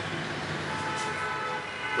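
Steady background noise: an even hiss with a low hum and a few faint tones underneath, with no clear event.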